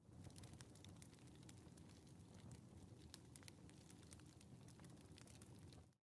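Near silence: a faint low hiss with scattered tiny clicks.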